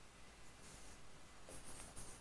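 Faint sound of writing on a board, a couple of short patches of strokes over quiet room tone.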